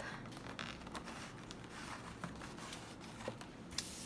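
Cardboard oil pastel box being opened by hand: faint rubbing and scraping of the lid against the box, with a few light clicks and a sharper tap near the end.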